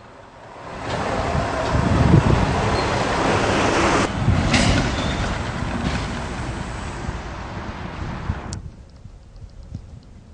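Road traffic noise: a rush of vehicle engine and tyre sound that swells up about a second in, holds for several seconds and eases off, then stops abruptly a little before the end.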